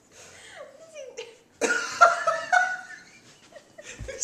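A person laughing in a burst about a second and a half in, after a few faint, short vocal sounds.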